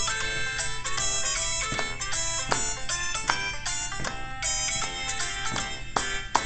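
Instrumental introduction of a children's sing-along song: a quick run of bright pitched notes, several sounding together, with no singing yet.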